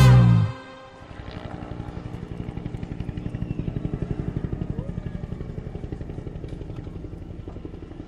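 The song's last loud chord cuts off about half a second in. Then an engine with a fast, even pulse swells up and fades away again, like a vehicle passing by.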